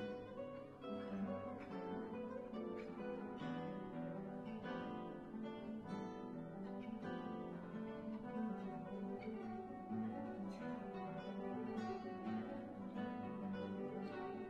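Two classical guitars playing a duet: a continuous flow of plucked notes and chords, with no break.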